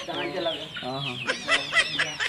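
Chicken squawking and clucking in a string of short calls that drop in pitch, loudest about one and a half seconds in.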